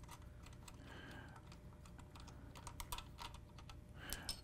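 Faint small clicks and ticks of small screws being loosened by hand and backed out of a metal telescope mount, bunched together about two and a half to three seconds in.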